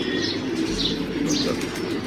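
Domestic pigeons held in the hands, wings flapping and rustling, with pigeons cooing in the background.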